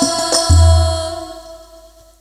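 Al-Banjari sholawat ensemble of girls' voices with hand-beaten terbang frame drums. A few quick drum strokes end with a deep drum hit about half a second in, then the voices hold one final chord that fades out.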